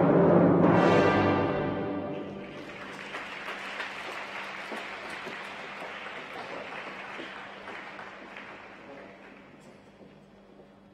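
Orchestral skating music ends on a loud final chord about two seconds in. The crowd in the ice rink then applauds, and the clapping fades away toward the end.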